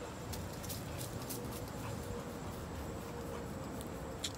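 Quiet outdoor background with a low rumble and a faint steady hum. Over it come a few light clicks and rustles, about four in the first second and a half, as a pit bull pushes through the base of a hedge.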